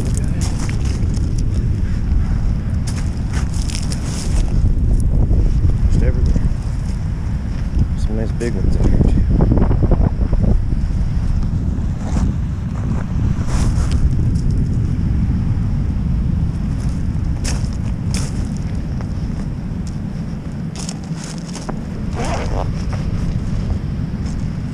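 Strong wind buffeting the microphone over the wash of ocean surf, with scattered crunches of wet beach pebbles.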